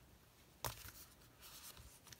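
Faint handling of paper sheets, with one sharp short click or tap about two-thirds of a second in and a light rustle after it.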